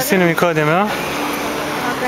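Shouted voices chanting "What up?": one loud voice swoops up and down in pitch through the first second, then a shorter held note.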